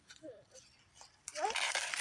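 A quiet stretch, then near the end a brief rustle of dry pine branches and fallen needles being brushed aside.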